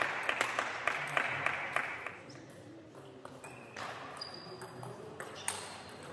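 Table tennis ball clicking: a quick run of sharp ball clicks in a large hall over the first two seconds, then only a few scattered clicks and a couple of brief high squeaks.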